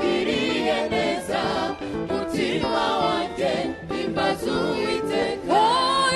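A gospel worship team singing together into microphones, several voices in harmony. Near the end a louder voice slides up in pitch.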